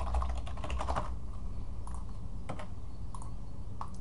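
Typing on a computer keyboard: a quick run of keystrokes in the first second, then a few separate clicks spaced out through the rest, over a steady low hum.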